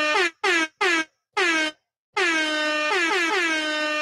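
Air horn sound effect played back: four short blasts in quick succession, then a long held blast starting about two seconds in, each blast opening with a slight drop in pitch.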